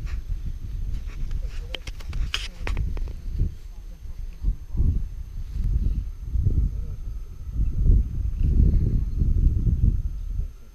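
Wind buffeting the camera's microphone on an open launch hill: an uneven low rumble that swells and drops in gusts. A short cluster of sharp clicks about two seconds in.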